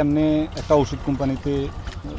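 A man speaking into a handheld microphone: a drawn-out vowel, then a few short words.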